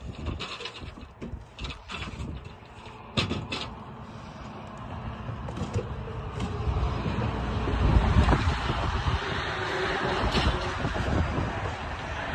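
Knocks, clicks and scraping of household items being handled and shifted while a storage unit is sorted. From about four seconds in, a rushing noise with a deep rumble swells, is loudest about halfway through and keeps on under the handling sounds.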